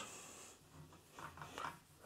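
Faint rubbing of marker writing being wiped off a whiteboard, in a few soft strokes.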